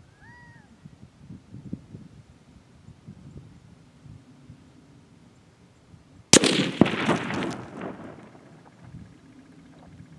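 A .22-250 rifle firing a single shot: one sharp, loud crack about six seconds in that dies away over about a second and a half.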